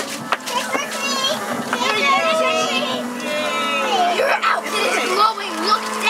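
Several children's voices chattering and exclaiming over one another, some of them high-pitched, over a steady low hum.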